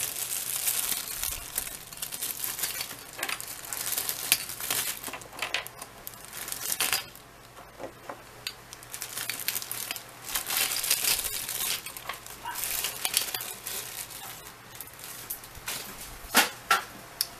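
Thin nail-art transfer foil sheets and their plastic packaging being handled, crinkling and rustling irregularly. The crinkling dies down for a couple of seconds about halfway through.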